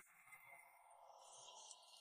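Near silence: a dead-quiet pause in the soundtrack.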